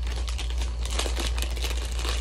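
Foil snack bag crinkling as it is handled, a dense run of irregular crackles.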